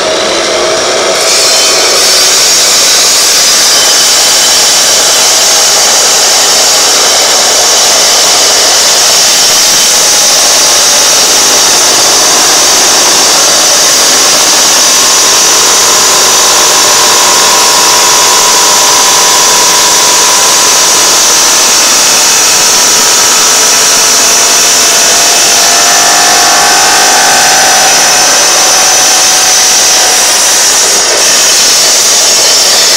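Electric power saw running and cutting through a large horse conch shell: a loud, steady grinding whine, its lower tones shifting a little as the blade bites into the shell.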